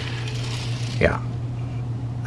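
A steady low hum under a faint hiss, with one short spoken word about a second in.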